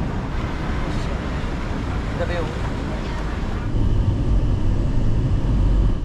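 Steady city street traffic noise with a heavy low rumble beside a van, growing louder over the last two seconds and cutting off abruptly at the end.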